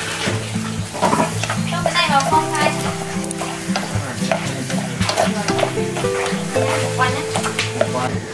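Duck innards with ginger and lemongrass sizzling as they are stir-fried in a small metal pot, the chopsticks ticking against the pot as they stir.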